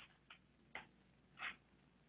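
Near silence with four faint, unevenly spaced clicks.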